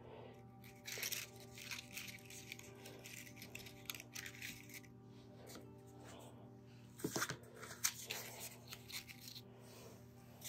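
Soft background music under the rustle and crinkle of paper peony flowers being handled and set down on a heart-shaped wreath board, with louder handling noises about a second in and around seven to eight seconds in.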